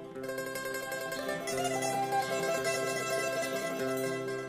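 Hungarian Roma folk music from a studio album recording, with plucked string instruments prominent over sustained pitched notes; the music grows a little fuller about a second and a half in.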